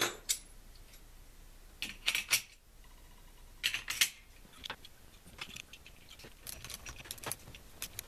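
Small metal hardware, bus bars and terminal nuts, clinking and clicking as it is handled and set onto the terminal posts of lithium iron phosphate battery cells. Sharp clinks come in a few short clusters, followed by lighter, quicker ticks in the second half.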